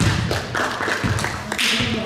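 A basketball bouncing on a gym's hardwood floor: several dull thuds over two seconds.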